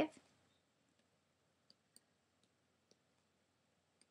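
Near silence with a few faint, irregularly spaced clicks from the handwriting input as numbers are written on a digital whiteboard.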